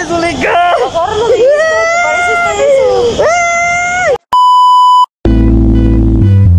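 A voice making long, drawn-out wailing or sung calls that slide up and down in pitch, cut off about four seconds in by a steady beep lasting under a second. After a short gap, music with a heavy bass line starts.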